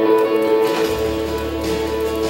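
Music playing: a held chord, with a low hum coming in about a second in.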